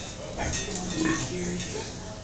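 Indistinct voices in a small club between songs, low in level, with short broken vocal sounds and no music playing.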